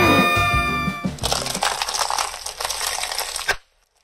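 Ice cream cones covered in candy-coated chocolates being crushed under a car tyre: a dense crunching and crackling of breaking cones and candy shells, starting about a second in and cutting off suddenly near the end. Before it, gliding cartoon-style tones.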